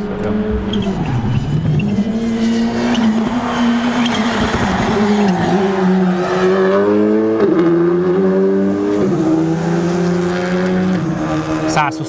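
Skoda Fabia RS Rally2's turbocharged 1.6-litre four-cylinder engine at full racing pace, its pitch stepping up and dropping again through gear changes, with tyre noise through the middle as the car corners.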